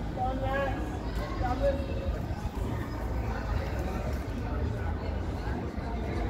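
Indistinct voices talking, clearest in the first two seconds, over a steady low rumble of street noise.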